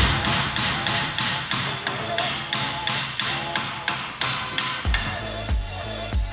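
Hand hammer striking steel at a car's front steering knuckle, a quick even run of blows about three a second, stopping about five seconds in. Background music with a steady beat plays throughout.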